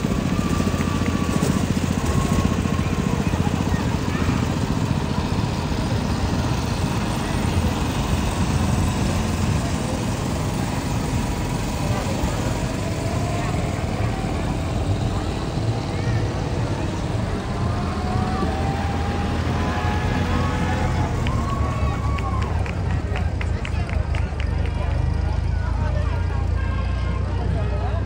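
Low engine rumble from passing vehicles, an old farm tractor among them, with people talking around.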